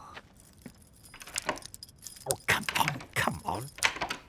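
A large ring of metal keys jangling and clinking as they are fumbled at a door lock: a run of quick rattling clinks that starts about a second in and gets busier in the second half.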